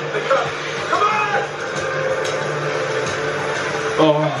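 A TV drama's soundtrack playing: steady held background music with a couple of short spoken lines.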